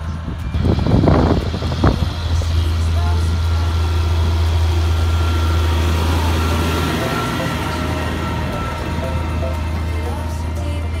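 Challenger MT765C tracked tractor's diesel engine running steadily under load as it pulls a land leveller, a deep drone that grows a little louder as the tractor passes close, then eases. Two short thumps come in the first two seconds.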